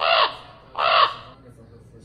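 Two harsh crow caws, about 0.8 seconds apart, each lasting about half a second, over a low steady hum.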